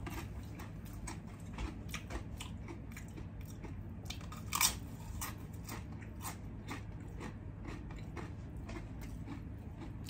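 A person chewing a tortilla chip dipped in guacamole: a run of small, crisp crunches, with one louder crunch about halfway through.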